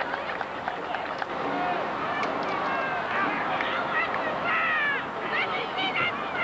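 Several people shouting and calling out over one another, short yells that rise and fall in pitch, with a few sharp knocks early on.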